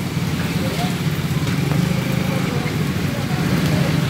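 Motorcycle engine idling close by, a steady low hum that holds on without revving.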